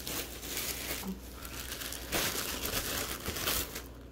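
Clear plastic bag of toy stuffing crinkling as it is handled and reached into, louder in the second half.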